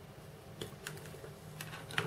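Side cutters snipping plastic model-kit parts off the sprue: a few small, sharp clicks from about half a second in, the last near the end.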